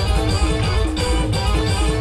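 Indian village brass-and-DJ style band music, loud and steady: a plucked, guitar-like lead playing short repeating notes over heavy bass and a steady beat of about three strokes a second.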